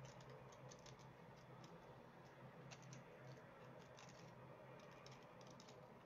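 Near silence with faint, scattered small crinkly ticks: hands handling wafer paper flowers and leaves on thin wire stems.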